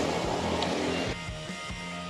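Road traffic noise, with a lorry passing close, under background music. About a second in the traffic sound cuts off, leaving only the quieter music.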